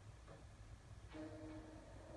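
DVD menu music starting faintly through the TV's speaker about a second in, a few held tones over a low steady hum.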